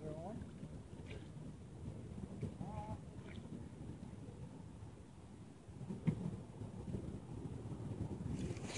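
Low wind rumble on the microphone, with two brief faint voice sounds early on and a single knock about six seconds in.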